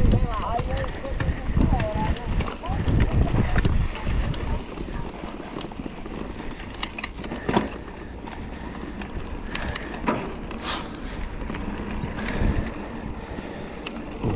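A mountain bike ridden over a dirt track, heard from a handlebar camera: an irregular low rumble and buffeting from the tyres and air on the microphone, with scattered short clicks and rattles from the bike over the rough ground. It runs quieter and steadier on the smoother straight after about six seconds.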